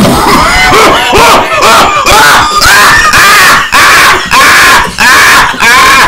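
A man coughing hard on a lungful of blunt smoke: a long run of harsh, voiced coughs so loud they overload the microphone, starting and stopping abruptly.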